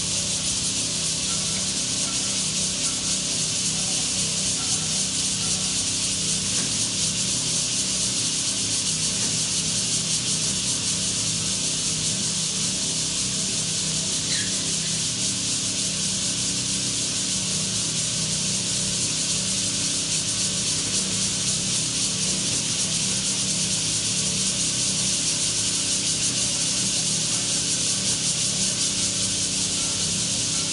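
A dense, steady high-pitched hiss, typical of a cicada chorus in the trees, over a low steady hum.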